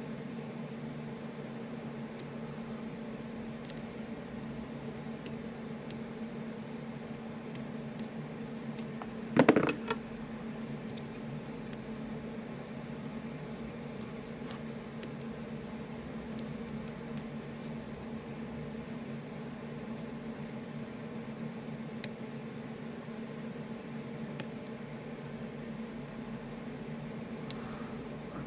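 Lock pick and tension wrench working the barrel pins of an ASSA Ruko Flexcore cylinder: faint, scattered small metallic clicks over a steady low hum, with one louder knock about nine and a half seconds in.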